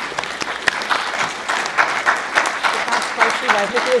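Applause: many people clapping rapidly, with voices starting to talk over it near the end.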